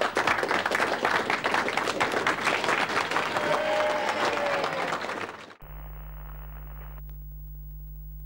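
A crowd applauding, dense clapping that cuts off suddenly about five and a half seconds in, giving way to a steady low hum.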